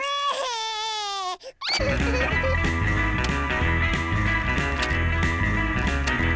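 A toddler-voiced cartoon cry: one wavering wail sliding down in pitch for about a second and a half, then breaking off. Almost at once, bouncy music with a steady beat starts up and keeps playing: the pass-the-parcel music, the signal to pass the parcel round.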